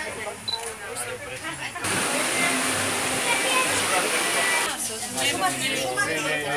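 Water rushing from a water-tower spout into a steam locomotive's tank: a loud, even rush that starts suddenly about two seconds in and eases near the end, with a woman's voice before and after it.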